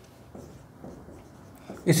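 Marker pen writing on a board: a few short, faint strokes as "6th" is written.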